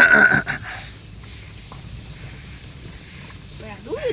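A short, loud, harsh vocal burst in the first half second, then the car's engine running with a low steady rumble, heard from inside the cabin; a man's voice starts again near the end.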